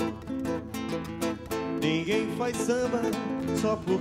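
Two nylon-string acoustic guitars playing a samba, plucked and strummed chords in a steady rhythm, with a man singing a wordless, wavering melody in the middle.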